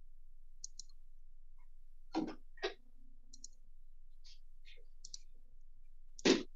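Computer mouse and keyboard clicks: a scattering of short, sharp clicks, with two louder ones about two seconds in.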